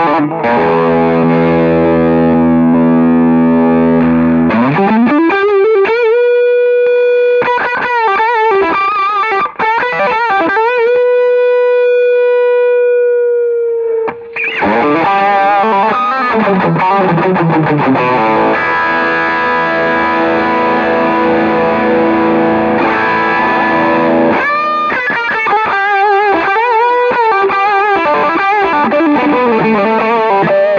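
Ibanez electric guitar played through a Zoom G5n multi-effects processor on a distorted Bogner amp model. A held chord rings for about four seconds, then a note is bent up and sustained for about eight seconds. It slides down into busier lead lines and chords.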